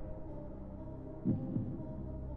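Quiz countdown suspense track: a steady low droning bed with a single heartbeat-like thump about 1.3 s in, timing the last seconds of the answer timer.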